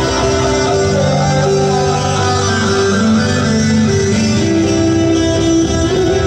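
Electric guitar playing an instrumental passage of held chords that change every second or so.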